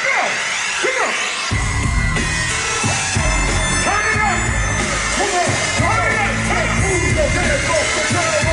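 Hip-hop beat played loud over a live concert sound system, its heavy bass coming in about a second and a half in. The crowd's cheering and shouting is mixed with it.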